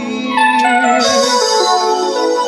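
Live band music between sung lines: an instrumental melody steps down in pitch over several notes, then settles into a held chord about a second in.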